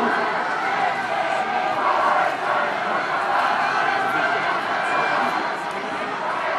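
Crowd of spectators in a stadium grandstand shouting and cheering, many voices overlapping at a steady level.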